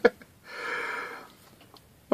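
A man's single breathy exhale, like a sigh, just after laughing, lasting under a second from about half a second in.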